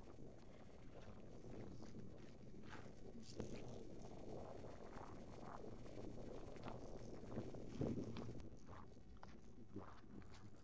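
Footsteps crunching irregularly on loose rocks and gravel, with a low rumble of wind on the microphone.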